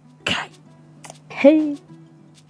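A person coughs once, sharply, about a quarter second in, then makes a brief voiced sound like a short 'hm' about a second and a half in, over a faint steady low hum.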